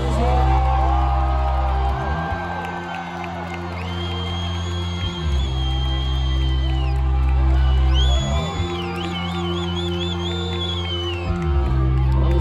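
Live rock band playing a slow passage: a deep bass chord held and changed about every three seconds, with a high sustained lead note over it that comes in twice and wavers into a quick trill the second time.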